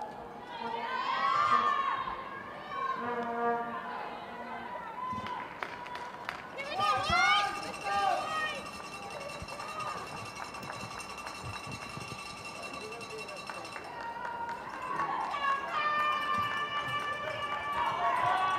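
Field-level crowd sound at a soccer match: shouted voices from players and spectators in bursts, loudest a second or two in and about seven seconds in, with a steady high-pitched tone running through the middle and again near the end.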